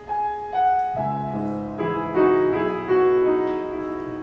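Piano introduction: a few single melody notes stepping downward, then fuller chords with bass notes from about a second in.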